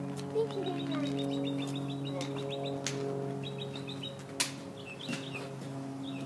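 Small birds chirping in quick trills over a steady hum, with two sharp clicks about three and four and a half seconds in.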